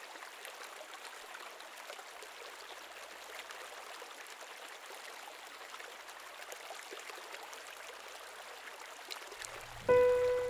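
Quiet, steady trickle and babble of running water from a stream. Right at the end the first pitched note of the music strikes in.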